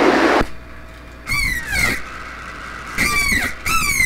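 Short squeals falling in pitch from a CB radio's speaker, coming in pairs about a second in and again near the end, over a low hiss.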